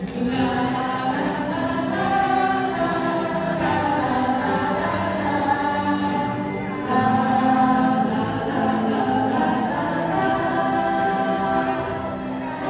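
A large group of voices singing a Mandarin pop song together, holding long notes, a little louder from about seven seconds in.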